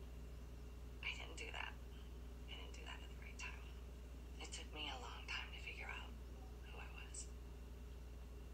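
Faint, indistinct dialogue from a TV episode playing in the room, heard low under a steady low hum.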